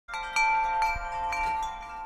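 Chimes struck several times, their bright tones ringing on and slowly fading.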